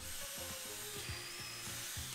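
A drill driving a Blum hinge-boring jig, boring the cup and screw holes for a cabinet door hinge: a steady, fairly quiet whir with a faint high whine, under soft background music.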